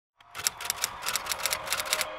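Typewriter keys striking in a quick, uneven run of a dozen or so clacks as a date is typed out.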